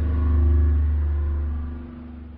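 Deep, sustained bass tone with fainter steady tones above it, fading out toward the end: the tail of a logo-sting sound effect.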